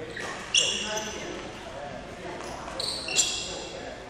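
Sports shoes squeaking on the court floor during badminton footwork, two sharp high-pitched squeaks, one about half a second in and one about three seconds in.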